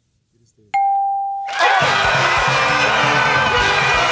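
A single game-show answer-reveal ding about three-quarters of a second in, held briefly, then from about a second and a half in loud studio-audience cheering over a celebratory music cue with a steady beat, marking the Fast Money win.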